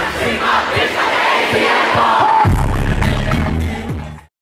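A crowd shouting and cheering over a hip-hop beat. The heavy bass drops out at first and comes back about two and a half seconds in.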